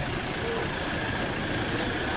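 A Toyota SUV's engine running as the vehicle rolls slowly past at close range.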